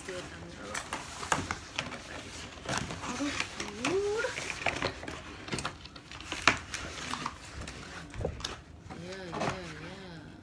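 Cardboard pizza boxes being handled and their lids flipped open on a table, a run of sharp knocks and scrapes, with short vocal sounds in between.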